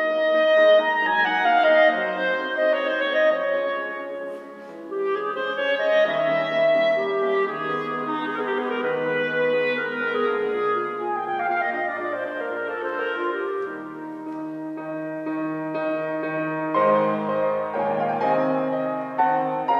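A classical instrumental piece played live: a sustained, singing melody line over accompanying chords, with a brief softer passage about four seconds in.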